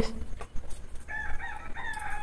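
A rooster crowing, starting about a second in with a few short broken notes and ending in a long held note that falls slightly in pitch. A few faint clicks come before it.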